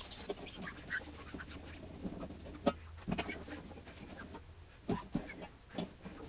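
Razor blade scraping small dried crusts off a mirror's glass surface: faint, irregular scratching with a few sharp ticks.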